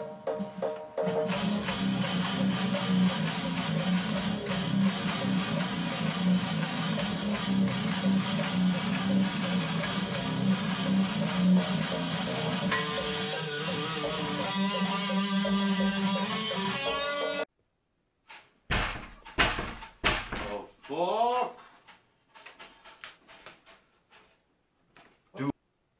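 Electric guitar playing a low, dense slam death metal riff, which cuts off suddenly about two thirds of the way through. A few scattered knocks and a short rising squeak follow.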